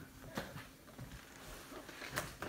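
Faint light clicks and handling noise of a cardboard gift box as its lid tab is worked open by hand.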